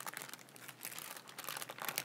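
Sheet of wax paper crinkling as it is peeled off a wax pillar candle: a faint, irregular run of small crackles.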